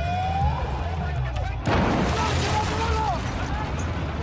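Emergency vehicle siren wailing upward amid street chaos, then a sudden loud rush of hissing noise about a second and a half in, with shouting voices over it.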